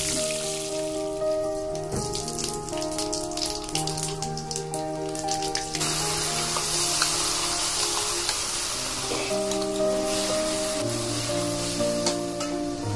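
Background music with a steady melody over oil sizzling as food fries in a pan; the sizzle gets louder about six seconds in.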